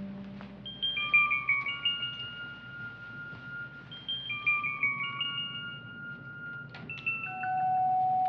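Sparse suspense score: high, bell-like mallet notes in short falling runs, played twice, with a held lower note coming in near the end.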